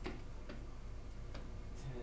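A few light, sharp clicks at uneven intervals over a steady low hum.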